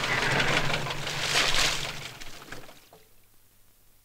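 A vehicle going by on a rain-soaked road: a rushing, splashing noise that swells twice over a low engine hum, then dies away about three seconds in.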